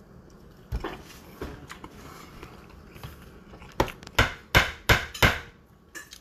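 A fork clicking and scraping against a plate while eating: a couple of light clicks early on, then a quick run of about five sharp clicks near the end.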